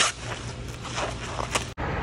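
Plastic bubble wrap crinkling as it is handled, with a few sharp crackles, cutting off suddenly near the end.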